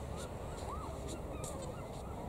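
Several faint, distant bird calls that rise and fall in pitch, over a steady low background rumble.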